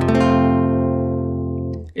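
Nylon-string classical guitar sounding an F major chord once, left to ring for almost two seconds with the high notes fading first, then cut off shortly before the end.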